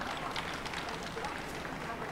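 Busy city street background: a steady low hum with faint, distant voices, and no loud event.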